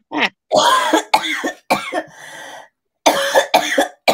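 A woman laughing hard in several loud bursts, with a quieter breathy stretch about two seconds in.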